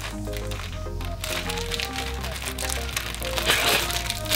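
Background music with steady held notes and a bass line, over the crinkling and crackling of a plastic-wrapped pack of cotton wool pads being pulled open by hand. The crinkling is densest near the end.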